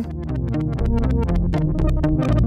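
Synthesizer music played through the Synthesis Technology E520 Hyperion Processor's Chowder Delay algorithm. A mod wheel sweeps the chop division from whole notes down to 64th notes, so the sound breaks into rapid, really tiny chopped slices.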